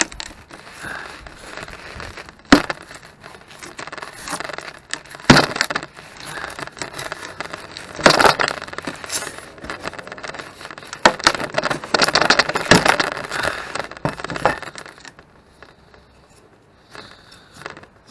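A steel pry bar levering and scraping at a wood block glued to blue foam insulation board, with irregular sharp cracks and scrapes as the foam gives way. The glue holds and the foam tears apart. The noises die down near the end.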